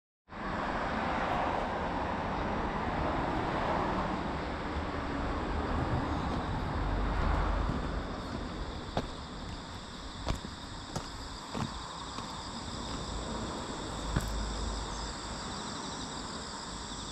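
Outdoor ambience: a broad, steady rush of noise through the first half, then steady high-pitched insect chirring, crickets, with a few scattered clicks of footsteps on pavement in the second half.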